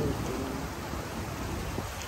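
Hot tub jets running, a steady hiss of bubbling, churning water.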